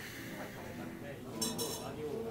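Dishes and cutlery clinking, with a short cluster of ringing clinks about one and a half seconds in, over low background voices.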